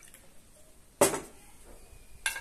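A single sharp glass clink about a second in, from a glass jar knocking against a drinking glass while ayran is poured into it.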